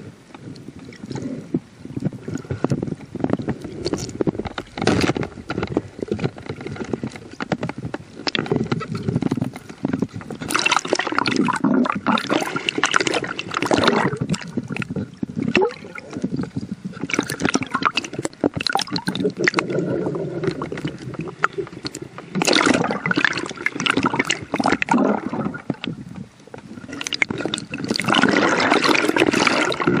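Water sloshing and gurgling around a speargun-mounted camera as the diver swims just under the surface, in irregular surges. It is loudest near the end, as the camera breaks the surface.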